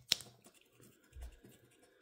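A quarter scraping the coating off a scratch-off lottery ticket: one sharp scrape just after the start, then faint scratching, with a soft low thump a little over a second in.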